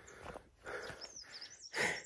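A man breathing hard in and out, several quick breaths, out of breath from running. A faint thin high warbling sound runs in the background during the second half.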